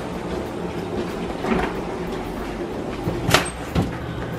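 Steady low hum and hiss, then two sharp clicks a little over three seconds in and again about half a second later, from a refrigerator door and its bottom drawer being opened.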